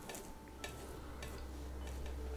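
Paintbrush dabbing paint onto the tips of hardened spackle-paste ridges on a canvas: four faint ticks a little over half a second apart, over a low steady hum.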